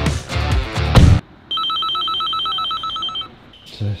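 Rock music with guitars cuts off abruptly about a second in. Then an electronic ringer sounds for about two seconds, a fast, even trill of high tones.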